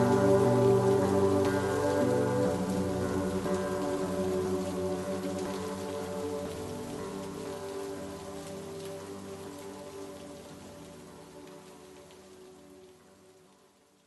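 Steady rain falling, with a held chord of backing music underneath. Both fade out gradually to silence just before the end.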